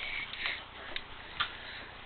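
Quiet room with a few faint clicks and light rustling; the clearest click comes about one and a half seconds in.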